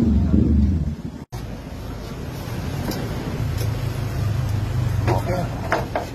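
Hyundai Tucson power-window regulator motor running in the open door and winding down to a stop about a second in. After a brief dropout, a steady low hum continues.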